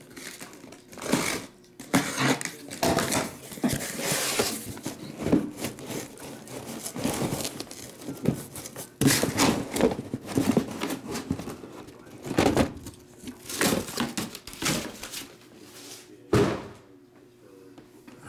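Cardboard case and sealed trading-card boxes being handled: irregular scraping and rustling of cardboard, with knocks and thunks as the case is lifted and the boxes are moved and set down, quieter near the end.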